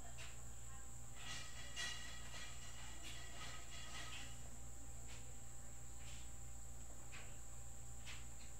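Quiet background noise of the recording: a steady high-pitched electrical whine over a low hum, with faint brief sounds between about one and four seconds in.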